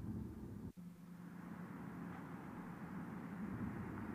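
Faint low rumble of a car's engine and road noise heard from inside the cabin, with a brief dropout a little under a second in and a thin steady hum after it.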